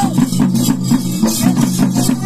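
Live drumming for a ritual dance: several drums beaten together in a fast, even beat, with many strokes a second.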